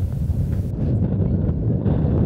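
Wind buffeting a camera microphone outdoors: a low, rumbling roar with no pitch to it.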